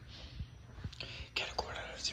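A person whispering in short, breathy phrases, with a few faint low knocks.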